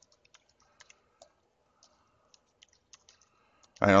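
Faint, irregular keystrokes on a computer keyboard as a login name and password are typed in.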